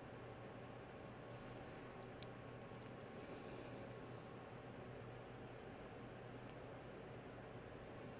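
Very quiet room tone: a steady low hum under a faint hiss, with a few faint clicks and a brief higher hiss about three seconds in.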